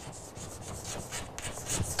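Chalk writing on a chalkboard: a quick run of short strokes as a word is chalked letter by letter.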